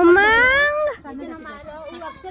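A loud, drawn-out cry that rises steadily in pitch for about a second and then breaks off, with people talking around it.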